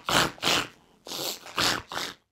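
A person's voice making four short, breathy, wordless pig-like noises for the pig Animoji on an iPhone X.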